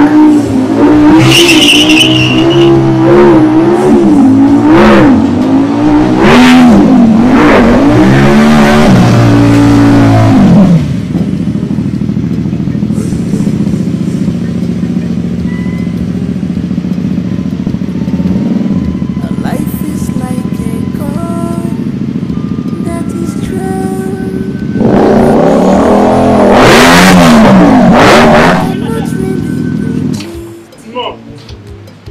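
Sport motorcycle engine revving up and down repeatedly for about ten seconds, then a lower, steadier engine sound under faint music, and another round of revving near the end.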